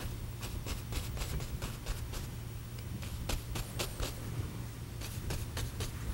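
A paint brush laden with oil paint stroking and dabbing on a canvas: an irregular run of short, scratchy strokes, over a steady low hum.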